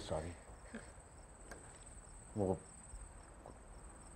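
Crickets chirping steadily in a high, even trill as a night-time background, with one short voice sound about two and a half seconds in.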